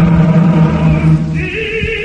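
Opera singing with orchestra: a sustained chord from chorus and orchestra, then about one and a half seconds in a single voice takes over on a held high note with wide vibrato.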